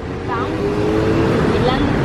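Street traffic: a motor vehicle passes on the road, a steady engine drone growing louder over low traffic rumble.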